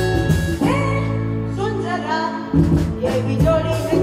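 Live band playing a Hindi film song, with bass guitar, keyboards and tabla, and a child singing over it. The beat stops for a held low chord about half a second in and comes back about two and a half seconds in.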